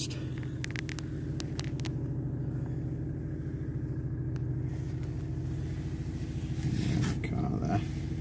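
BMW 218d's 2.0-litre four-cylinder diesel engine idling steadily, heard from inside the cabin, with a few light clicks about a second in.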